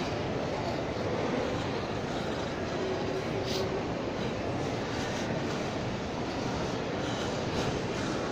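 Steady rumbling background noise of a large indoor shopping-mall concourse, with a few faint taps.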